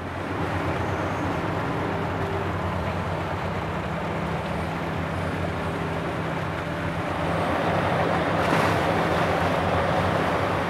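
Diesel engine and hydraulics of a long-reach excavator working in a slurry trench: a steady low drone under a broad rumble, getting louder about seven seconds in.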